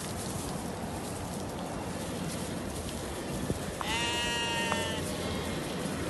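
A Harri sheep bleats once, about four seconds in: a single call lasting about a second, over steady background noise.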